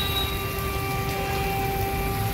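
A police band's brass playing one long, held note over a low steady rumble.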